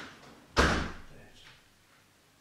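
A door slamming shut once, about half a second in, loud and sharp, with a short fading tail of room echo.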